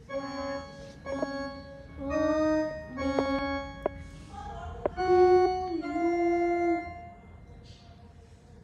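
Mini electronic keyboard with an organ-like tone, played one note at a time by a beginner: about seven slow, held notes in a simple tune, with a few key clicks.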